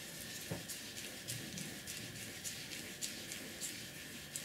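Flat paintbrush stroking back and forth over wet paint on paper: a soft, scratchy swish with each stroke, about two or three a second.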